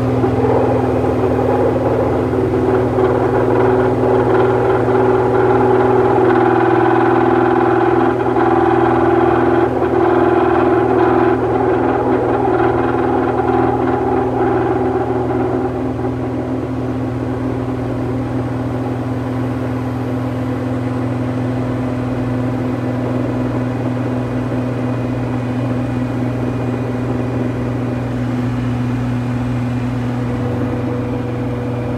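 Washing machine drum and belt pulley turning on a broken drum bearing: a loud, steady mechanical drone with a low hum, rougher and louder for the first half, easing off a little about halfway through.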